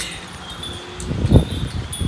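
Faint high tinkling of chimes over a low rumble of wind on the microphone, which swells into a gust a little past a second in.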